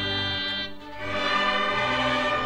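String orchestra led by violins playing slow, sustained music. The sound drops briefly a little under a second in, at a break between phrases, then comes back in louder.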